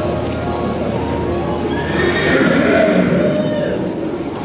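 A horse whinnying: one call of about two seconds, starting about halfway through, over background music.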